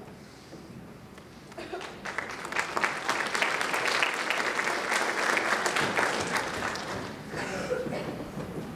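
Audience applauding. It starts about two seconds in, builds to a full round of clapping, then tapers off near the end.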